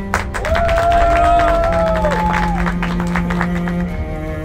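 A small group clapping and cheering for about the first three seconds, with a long drawn-out shout, over background music with a steady low note.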